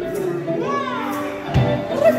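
Live acoustic guitar music with a microphone voice. About half a second in, a voice gives a short cry that rises and then falls in pitch. A low thump comes near the end.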